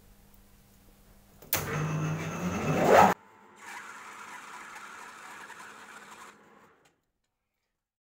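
Metal lathe switched on: its motor hum comes up with a rising whine as the spindle spins up, then cuts off abruptly. A quieter steady hiss of the lathe running follows for about three seconds, then silence.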